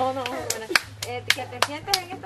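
Hands clapping in a steady rhythm, about six claps at roughly three a second, starting about half a second in, with a voice going on underneath.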